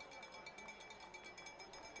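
Near silence: the faint background of a radio broadcast between calls, with a thin steady high tone.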